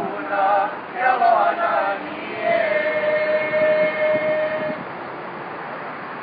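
A voice chanting in a wavering, ornamented line, then a long, steady held tone lasting about two seconds, about halfway through.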